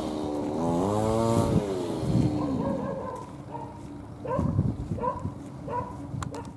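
A motor vehicle engine going by, its pitch rising and then falling over the first two seconds before fading. After it come several short chirp-like calls.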